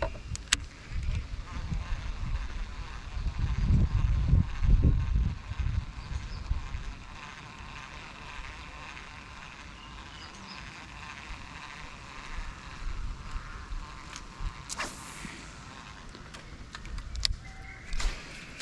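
Faint, steady buzzing of insects over a rumbling low noise that is loudest about four to five seconds in, with a few sharp clicks.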